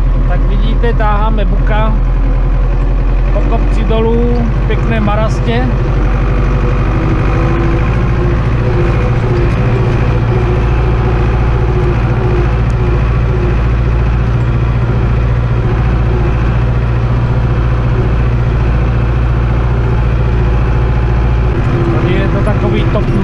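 Zetor 7245 tractor's four-cylinder diesel engine running, heard from inside the cab while the tractor drives across a muddy field; its drone becomes steadier from about seven seconds in. A voice talks over it during the first few seconds.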